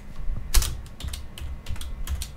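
Typing on a computer keyboard: a run of separate keystrokes, the loudest about half a second in.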